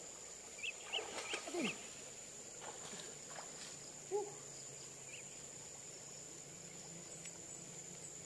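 Faint steady rush of a wide, muddy flowing river, with a few short distant calls in the first two seconds and one more about four seconds in.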